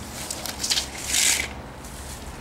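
Rustling and light scraping as a heavy wooden fence post is handled and turned over on grass, with a few small clicks and a louder rustle about a second in.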